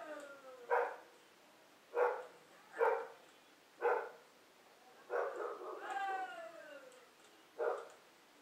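A dog barking: five short, separate barks spaced one to four seconds apart, and a longer drawn-out call that slides down in pitch about five seconds in.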